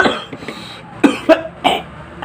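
A man coughing through a mouthful of instant noodles: one sharp cough at the start, then three short coughs close together from about a second in.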